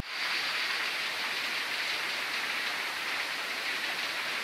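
A steady, even hiss of water with no separate drops, splashes or pitched sounds.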